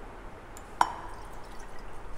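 A single drop of titrant from a glass burette falling into the solution in a conical flask, one short plink a little under a second in, during dropwise addition near the titration's end point.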